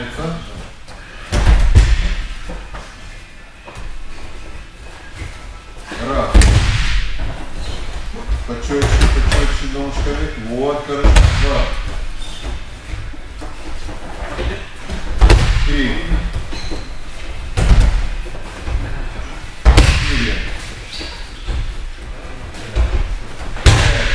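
Bodies landing on padded martial-arts mats as a training partner is thrown again and again: about seven heavy thuds a few seconds apart, in a large hall.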